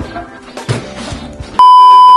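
Background music, then about a second and a half in a loud, steady, single-pitch test-tone beep of the kind that goes with TV colour bars. It sounds for about half a second and stops abruptly.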